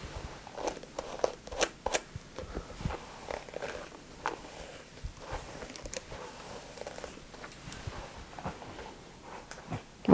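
A bristle paddle brush drawn through wet hair in repeated, irregular short strokes, quiet scratchy brushing with soft rustles.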